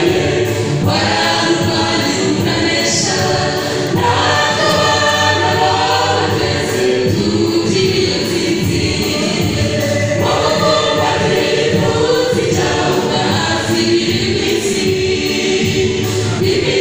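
Church choir of men and women singing a gospel song in Kinyarwanda, several voices together into microphones.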